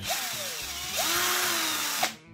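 Philco Force PPF03 cordless drill running free, with no load: its motor whine winds down, then spins up again about a second in and holds steady. The trigger is squeezed to light the battery charge indicator.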